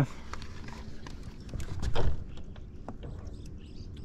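Irregular knocks and taps from gear being handled on a fishing boat's deck, with one louder thump about halfway through, over a low steady rumble.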